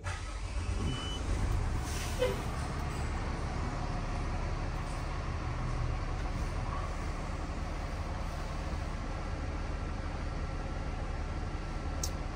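Cummins L9 450 hp diesel engine of a Class A motorhome starting at the push of a button and settling into a steady low idle of about 720 rpm, heard from the driver's seat.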